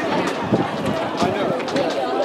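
Spectators chattering, several voices overlapping with no clear words, and a few light taps.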